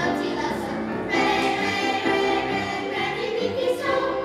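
Middle school children's choir singing in parts, holding sustained notes, with a new phrase coming in about a second in.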